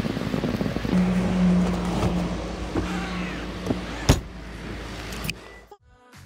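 A car close by: a low steady hum with a whining tone held for about three seconds, then a single sharp click.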